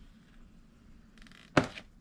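A scoring stylus drawn briefly along a gift-box board on a scoring board, a faint scratchy scrape, followed by a single sharp thunk near the end.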